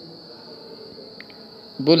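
A steady high-pitched background tone, constant and unbroken, in a pause of a man's speech. He starts a word just before the end.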